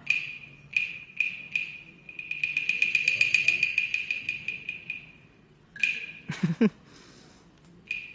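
Chinese opera percussion: a few sharp strikes on the bangu clapper drum, then a fast roll lasting about three seconds that swells and fades. A brief, louder metallic crash comes a little after the middle, and one more sharp strike follows near the end.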